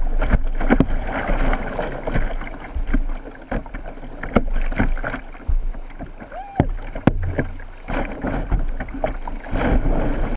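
Whitewater rapids rushing around a kayak, with repeated sharp splashes and knocks of the paddle blades striking the water and the boat.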